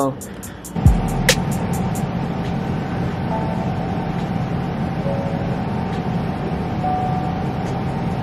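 Music from a beat being built with software instruments: a deep bass hit about a second in, then a steady low bass drone under long held horn-patch notes through hall reverb, the notes changing every second or two.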